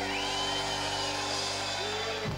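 Live band music with blues harmonica: a long held chord with high sliding notes over it.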